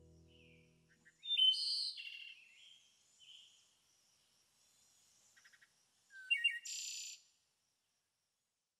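Wild birdsong: a run of quick, high chirps and calls, loudest about a second and a half in and again near the end, cutting off suddenly about seven seconds in. Background music fades out in the first second.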